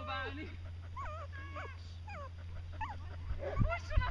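A dog whining and yipping in a series of short, high calls that bend up and down in pitch, scattered through the few seconds.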